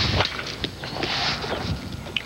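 A baseball bat striking a softly flipped baseball in a flip drill, one sharp crack at the very start, with the ball driven into a batting net. A couple of faint knocks follow over steady outdoor field noise.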